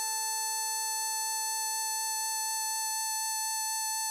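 A long held harmonica note, hole 6 draw (A5), sounding steady over a sustained F major chord accompaniment; the lower chord tones cut off about three seconds in, leaving the note alone.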